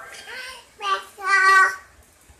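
An infant vocalizing: two drawn-out, high-pitched sounds, the second longer and louder.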